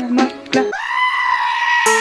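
Upbeat plucked-string music cuts off suddenly and a sheep lets out one long, loud bleat lasting about a second. Music starts again right at the end.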